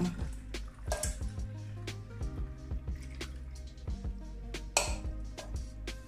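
Background music with a steady low bass line, over scattered light clicks and knocks and a short rustle about five seconds in, from hands working a plastic spray bottle and a paper kitchen cloth while straining coconut milk into the bottle.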